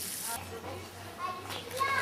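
Water from a watering can's rose spraying onto loose soil, cutting off sharply less than half a second in. After it come a low steady hum and short snatches of voices.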